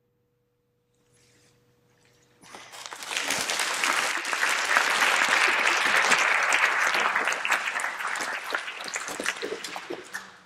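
Audience applauding, beginning about two and a half seconds in, holding steady, and starting to fade near the end.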